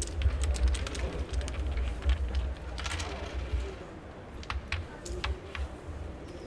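Wooden carrom men clicking against one another and tapping down on the carrom board as they are set out by hand, with a low thudding underneath. The quick, irregular clicks come thickest in the first three and a half seconds and then thin out to a few scattered taps.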